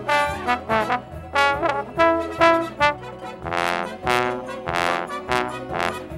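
Slide trombone, close-miked, playing a show-tune part in short, detached notes in a brisk rhythm. Partway through come a few longer, brighter notes.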